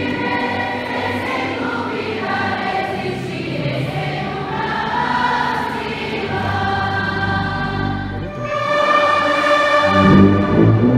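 Hymn sung by many voices together with orchestral accompaniment, in held notes that change every second or so.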